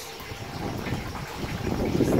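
Water sloshing and lapping in a plastic tub as a large catfish is held and shifted in it by hand: an irregular, unpitched wash of low splashing that grows louder near the end.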